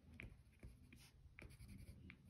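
Watercolour pencil tip dabbing on paper to mark small seed dots: faint, short ticks about two a second.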